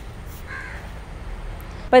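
A single faint, short bird call about half a second in, over a low steady background rumble.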